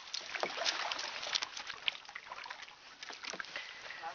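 Water splashing and lapping around a plastic kayak, with many small irregular clicks and splashes.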